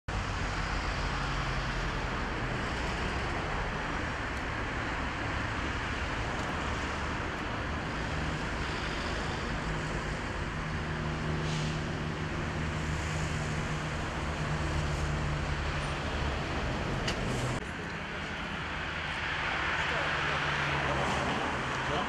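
Steady road-traffic noise with the low hum of vehicle engines.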